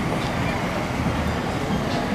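Steady low rumble and road noise of a slowly moving vehicle, heard from inside it.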